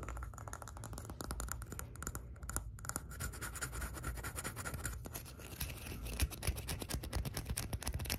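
Fingernails scratching and tapping fast on a small hard wood-and-metal object held right at the microphone, a dense run of scrapes and clicks that gets busier in the second half.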